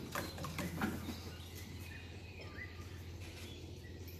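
Quiet outdoor garden ambience with a few light taps in the first second and a short, faint bird chirp about halfway through.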